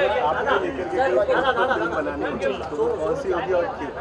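Speech: people talking, with overlapping chatter.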